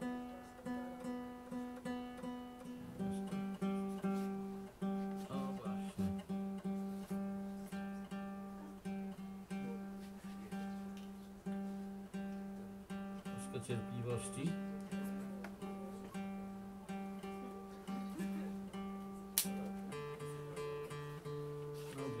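Acoustic guitar being retuned: a single string plucked again and again, about twice a second, while its pitch is checked. It moves to a lower string about three seconds in and to another near the end. The guitar had gone slightly out of tune.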